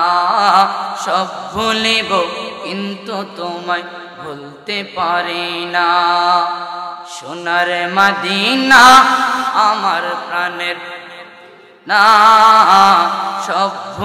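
A man singing a devotional song in praise of Madina into a public-address microphone, in long, wavering, ornamented held notes broken by short pauses. The voice drops away briefly just before the end, then comes back loud.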